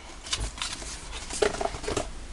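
Light taps and knocks of cardboard model boxes being handled and set down, with a short bit of voice about one and a half seconds in.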